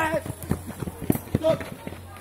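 A quick, irregular run of light knocks and scuffs, about a dozen in under two seconds, with a voice briefly in between.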